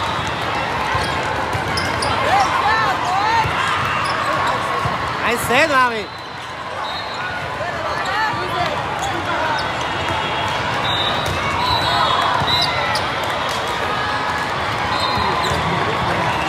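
Indoor volleyball rally in a large echoing hall: constant spectator chatter, sneakers squeaking on the court and the thuds of the ball being played. A loud short pitched squeal about five and a half seconds in is the loudest moment.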